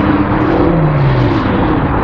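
A motor vehicle's engine running loud and steady, its tone sliding lower a little after half a second in.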